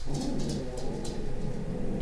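Pet dogs vocalizing with low, uneven sounds.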